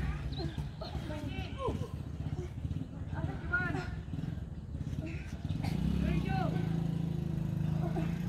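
Indistinct voices calling out in short bursts over a steady low engine hum that grows louder in the last couple of seconds.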